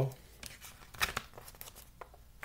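Plastic DVD case being handled and opened: a few short, scattered clicks and light rustles of plastic.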